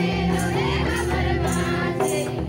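A group of women singing a welcome song together in chorus, with jingling percussion keeping a steady beat about twice a second.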